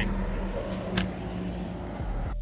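Steady low rumble of road traffic outdoors, with a single short click about a second in.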